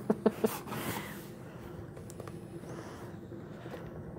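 Quiet handling of a small boxed SMOK vape kit: a brief soft rustle about half a second in, then faint room tone.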